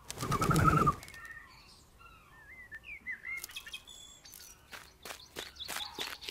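Cartoon pigeon sound effects: a burst of wing flapping with a warbling call in the first second, then small birds chirping. Near the end comes a run of quick, sharp taps as the pigeon pecks at scattered seed.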